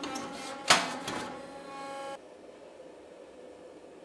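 Hydraulic forging press running with a steady pump hum while it squeezes a hot steel axe blank. A sharp metallic clank comes under a second in, with a few lighter clicks after it, and the press hum cuts off abruptly about halfway through, leaving faint room noise.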